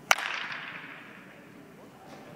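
A baseball bat hitting a ball: one sharp crack just after the start, ringing on in the echo of a large indoor hall for about half a second.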